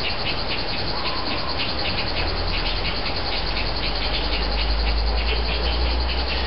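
Low, steady engine rumble that grows stronger about two seconds in, over a constant background hiss with faint fast ticking.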